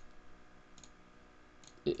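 A few faint computer mouse clicks while switching windows and right-clicking to open a context menu; a man's voice starts near the end.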